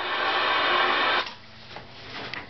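CB radio static hissing from the speaker, cutting off abruptly just over a second in, followed by a few faint clicks.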